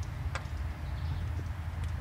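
Low steady rumble with a faint click about a third of a second in and a few more near the end, as a hand handles the metal carburetor on the engine.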